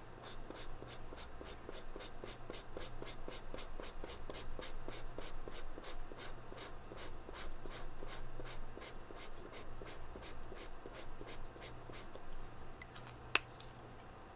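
Flexible-tip brush marker scratching back and forth across paper in quick, even strokes, about four a second, as a swatch is filled in. The strokes stop near the end, followed by a single sharp click.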